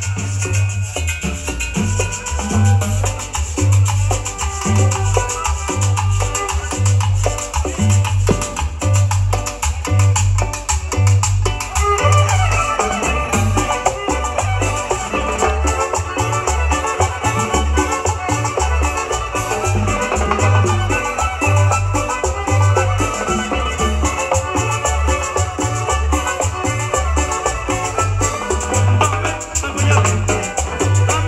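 Chanchona band playing a cumbia live through PA speakers: violins and guitar over a steady, evenly pulsing bass line, with timbales and hand percussion keeping the beat.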